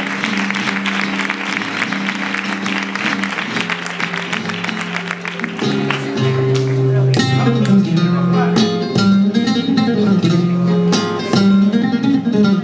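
Flamenco guitar playing, with applause over it that dies away about five seconds in. The guitar then comes forward in a louder picked passage with moving bass notes.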